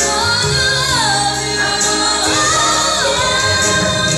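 A young girl singing a ballad live into a microphone over instrumental accompaniment, holding notes and sliding down in pitch several times.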